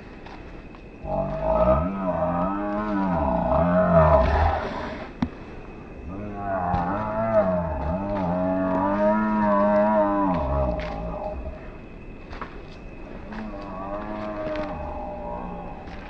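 A man's voice making three long, wavering moaning cries, each several seconds long, imitating an alien creature's call.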